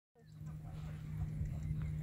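Horse's hooves thudding on a soft dirt arena at a lope, over a steady low hum, with faint voices in the background.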